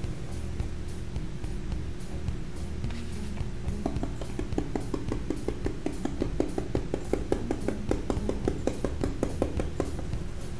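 Paintbrush dabbing quickly on a stencil laid over an MDF board, filling in lettering with acrylic paint: a run of short, light taps, about five a second, starting about four seconds in.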